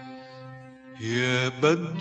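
Recorded Arabic song: orchestral strings hold sustained notes that fade away, then about halfway through a male voice comes in singing a wavering, ornamented phrase.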